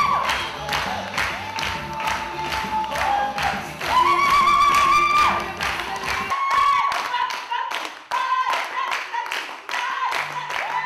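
Steady rhythmic hand-clapping to a Yemenite-style song, with a voice singing long, wavering held notes. The low backing part drops out about six seconds in, leaving the claps and the voice.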